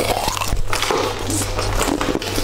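A bite into a frozen red fish-shaped jelly treat, followed by chewing, with many sharp crunches and crackles throughout.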